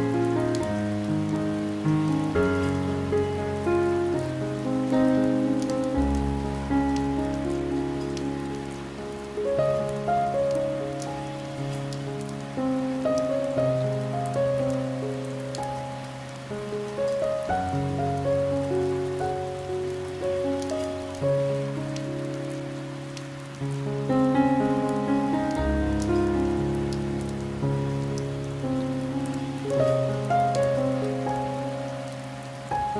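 Slow, gentle piano music in held chords with deep bass notes, each chord fading after it is struck, over steady rain pattering with scattered fine drop ticks.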